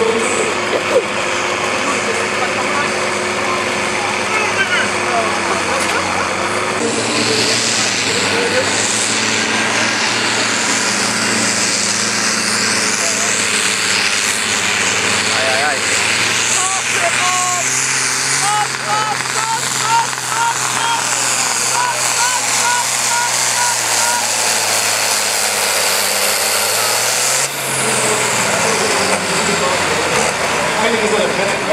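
Farm tractor's diesel engine working at full throttle as it drags a weight-transfer sled for about twenty seconds, then easing off near the end as the pull stops.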